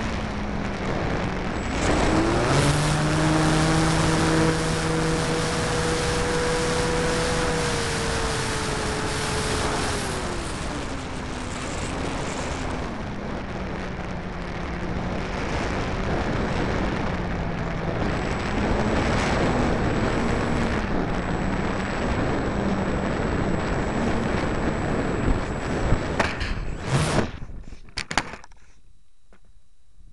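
Onboard sound of an 800mm foam RC Corsair in flight: its motor and propeller running under loud wind rush, the pitch holding steady and then dropping as the throttle comes back about a third of the way in, then wavering with throttle changes. Near the end a few sharp knocks as the plane hits the ground, then the motor stops.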